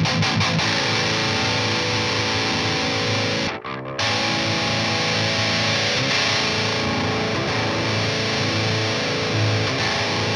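Distorted electric guitar riff through a Marshall head and a Harley Benton 2x12 cabinet with Vintage 30 speakers, picked up by a Shure SM58, the amp's treble set at 12 o'clock to make it less harsh. The playing breaks off briefly about three and a half seconds in.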